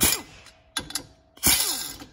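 Cordless power driver running stator coil bolts into an aluminium engine side cover in short bursts: one at the start, a brief one just before a second in, and a longer one about a second and a half in, each ending in a falling whine as the motor spins down.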